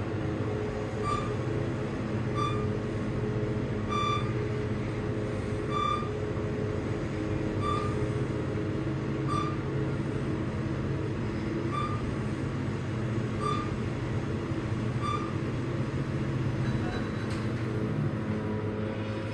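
Steady hum and rumble of a KONE machine-room-less traction elevator car riding upward. Short high beeps repeat every second and a half or so.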